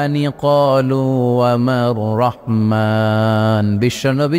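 A man chanting a Quranic verse in melodic recitation (tilawat), drawing out long held and gliding notes, with one note held for about a second near the end.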